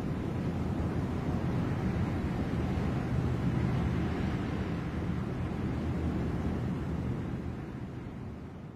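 Steady low rumbling ambience of open sea and wind, starting to fade out near the end.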